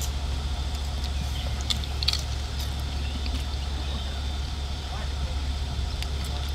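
Steady low hum of a vehicle engine idling, heard from inside the parked van's cab, with a few faint clicks.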